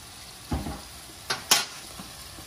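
Steaks, onion, bell pepper and garlic sizzling steadily in butter in a stainless steel skillet. A dull knock comes about half a second in, and two sharp clinks of a metal spoon against the pan come close together near the end.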